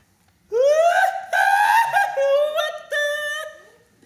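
A man's high falsetto vocal cry, not words: it sweeps sharply upward about half a second in, then holds a few long, high, wavering notes with short breaks, stopping about three and a half seconds in.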